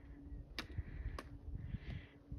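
Faint handling noise from a handheld phone microphone while the camera pans: a low rumble, two sharp clicks about half a second and a second in, and a short breathy hiss near the end.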